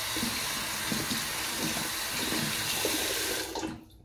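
Bathroom tap running steadily into the sink while a synthetic shaving brush is wetted under the stream. The water stops suddenly just before the end as the tap is shut off.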